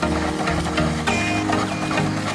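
Background music with a steady beat and sustained electronic-sounding tones.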